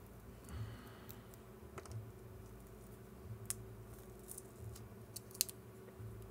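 Faint, scattered small clicks and ticks as a pin pries a metal contact plate off a broken button membrane, the sharpest click near the end.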